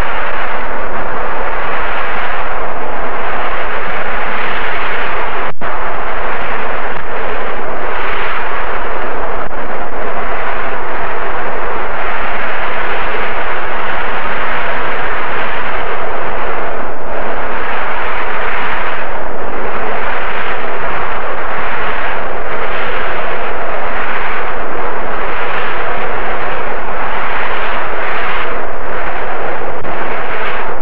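Wind and rough sea rushing loudly and steadily, with slight dips and swells every few seconds.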